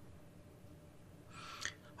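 Faint room tone, then a short audible breath in near the end.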